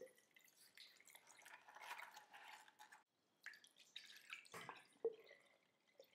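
Faint water trickling from a tipped bowl of wheat grains into a stone sink for about three seconds, then scattered drips and light clicks, with one sharp tap about five seconds in.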